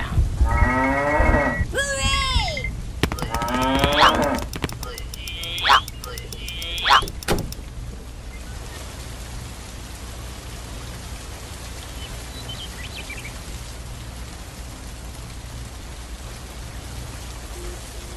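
Voice-like calls that slide up and down in pitch, with a few sharp rising whoops, through roughly the first eight seconds. After that comes a steady hiss of rain.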